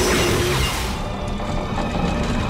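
Film score music mixed with a loud crashing noise that fades about a second in.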